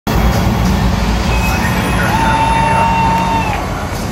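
Loud, steady low rumble of a packed stadium at a show's opening: bass sound from the PA over crowd noise. A high steady electronic tone joins about a third of the way in, a lower one follows, and both cut off together near the end.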